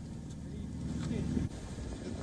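Low rumbling background noise with faint voices, which breaks off abruptly about a second and a half in.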